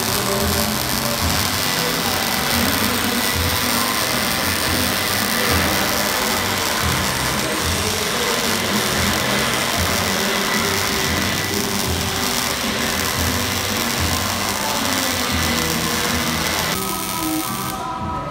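MIG welder's arc crackling steadily as it lays a bead on steel plate, over background music with a steady beat. The crackle stops about a second before the end, leaving the music.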